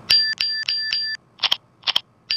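Phone keyboard app's key-press sound effects in an iPhone-style click preset: four short, bright ringing ticks in quick succession, then two sharper clicks.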